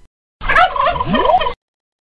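Turkey gobbling: one rapid, wavering gobble about a second long that starts about half a second in and cuts off abruptly.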